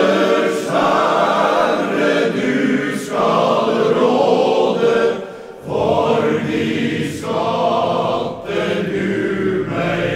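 Male voice choir singing in long held phrases, with a short break for breath about five and a half seconds in.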